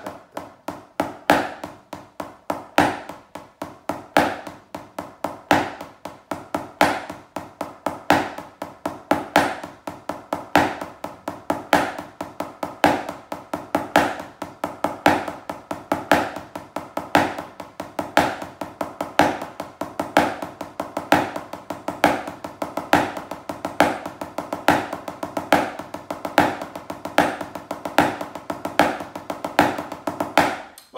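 Wooden drumsticks on a rubber practice pad playing Basel-drum five-stroke rolls (Fünferli), alternating left and right and repeated slowly in a steady, even rhythm.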